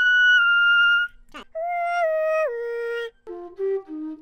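Flute playing a slow melody: a long high note, a quick upward sweep, then lower notes stepping down in pitch and a few short low notes near the end.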